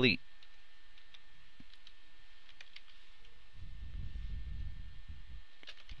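Faint clicks of computer keyboard keys being typed, several separate keystrokes over a steady background hiss, with a low rumble in the second half.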